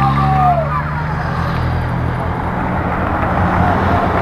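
Race-convoy motor vehicles passing close: a steady engine hum with rushing tyre and wind noise. The escort motorcycle and the team cars with bikes on their roofs go by.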